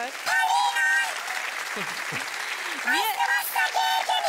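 Studio audience applauding and cheering, with raised voices calling out over the clapping.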